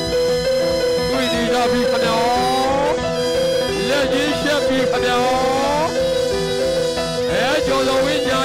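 Traditional Burmese Lethwei fight music: a shrill reed pipe plays bending, sliding notes over a steady held tone, backed by a fast, continuous drum beat.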